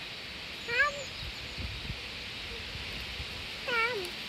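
A toddler's short, high, wavering "beee" call imitating a sheep's bleat, given twice: once about a second in and again near the end.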